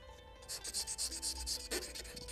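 Metal calligraphy pen nib rubbed quickly back and forth on fine sandpaper, about ten short scraping strokes a second, starting about half a second in. This is the finer honing stage that smooths the carved nib before it is tried on paper.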